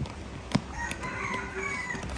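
A single sharp click about half a second in, then a faint, drawn-out bird call with a wavering pitch lasting a little over a second.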